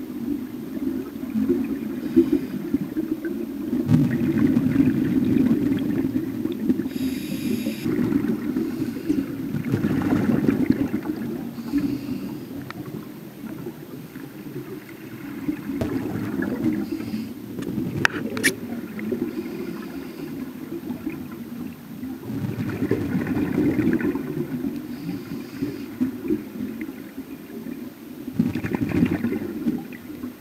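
A scuba diver's regulator breathing, heard underwater through the camera housing: exhaled bubbles swell and fade in slow cycles about every five to six seconds over a constant low, muffled rumble.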